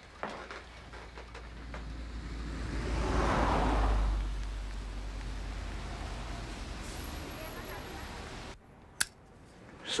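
Street traffic: a vehicle passes with a low rumble, swelling to its loudest about three to four seconds in and then easing to a steadier hum. The sound cuts off abruptly near the end, and a single sharp click follows.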